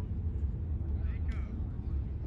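Steady low outdoor rumble with faint distant voices calling out about a second in.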